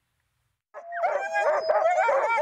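Several sled-dog huskies howling and yelping at once, excited as their teams get ready to start a race. The chorus starts abruptly under a second in, after a moment of silence.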